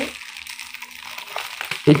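Plastic courier bag crinkling softly as hands grip and handle it to open it.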